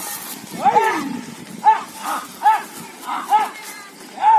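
Men shouting short, high-pitched "ah!" calls about once a second to drive on a pair of bulls pulling a stone block.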